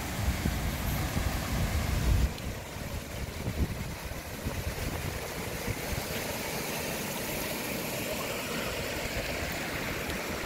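Steady rush of water flowing through concrete fish-hatchery raceways and spilling over their weirs. A low rumble on the microphone sits under it for the first two seconds.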